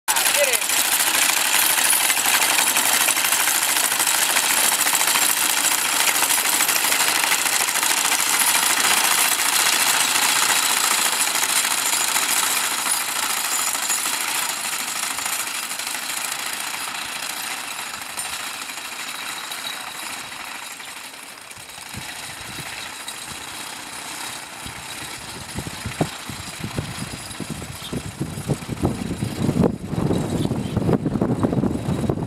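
Horse-drawn, ground-driven sickle-bar mower cutting hay: a dense, rapid clatter of the reciprocating knife and gearing. It fades over the first twenty seconds or so, and irregular low thumps come in near the end.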